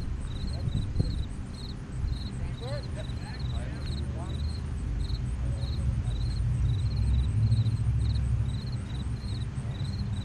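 Field insects chirping in a steady repeating pattern, about two short trilled chirps a second, over a low rumble of wind on the microphone, with faint distant voices.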